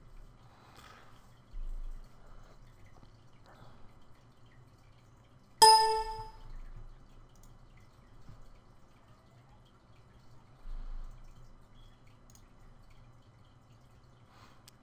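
A single short electronic chime about halfway through, several clear tones ringing together and fading within half a second: a computer's alert sound as the 3D preview render finishes. Under it a faint steady hum, with two soft low thumps.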